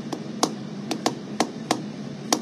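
Light, sharp taps, about six in two seconds at uneven spacing, made by hands working at a desk.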